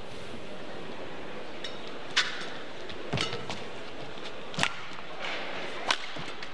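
Badminton rackets striking a shuttlecock in a rally: four sharp hits about a second to a second and a half apart, over a steady low arena background.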